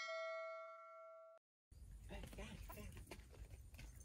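Notification-bell chime sound effect ringing with several clear tones and fading, then cut off abruptly about a second and a half in.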